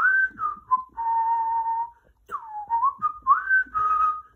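A person whistling a short wandering tune: a few sliding notes, one note held for about a second, a brief break, then more notes that swoop down and up.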